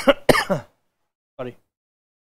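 A man coughing and clearing his throat: two harsh coughs right at the start, then a short, quieter one about a second and a half in.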